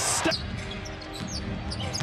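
Basketball dribbled on a hardwood court, a few sharp bounces, over a steady arena crowd hum.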